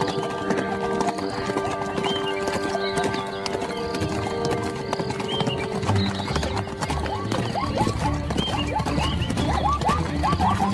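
Rapid hoofbeats of galloping horses and horses whinnying, over music with held notes.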